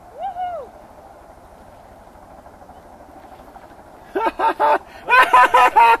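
People laughing: two bursts of quick, rhythmic ha-ha pulses in the last two seconds, the second burst louder and longer. Near the start there is a single short rising-and-falling vocal whoop.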